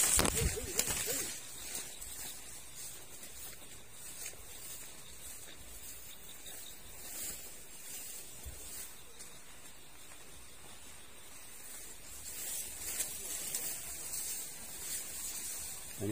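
Leaves, grass and stems rustling and brushing as a hiker pushes through a dense overgrown path on foot. The rustling is louder in the first second and again a few seconds before the end.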